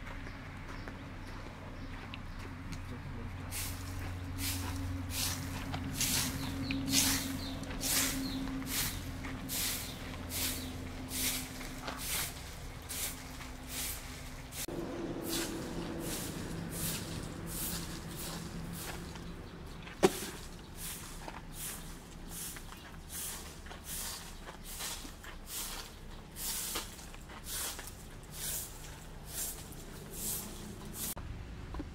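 Baby monkey sucking at a milk bottle: a run of short wet clicks, about one to two a second, over a steady low hum. One louder sharp click about two-thirds of the way through.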